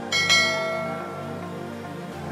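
A single bright bell chime, the notification-bell sound effect of a subscribe-button animation, struck just after the start and ringing out, fading over about a second and a half. Steady background music plays underneath.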